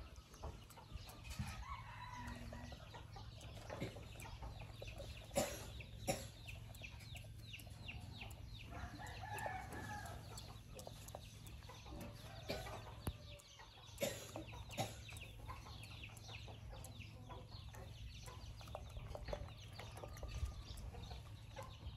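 Faint bird calls of a fowl-like kind, clucking with a longer pitched call about nine to ten seconds in, over many small clicks and rustles of a monkey's fingers picking through hair, with a few sharper ticks.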